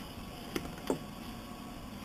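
Wooden stir stick spreading glue on a plywood block: two small clicks, about half a second and a second in, over a steady low hiss.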